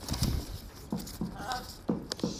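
A folded paper letter being unfolded and handled: scattered rustles and a few sharp crinkles, with soft low bumps of hands on paper.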